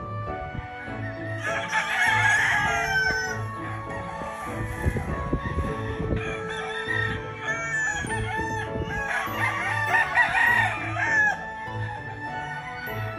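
Gamefowl roosters crowing, two long crows about two seconds in and again near the end, over background music with a steady beat.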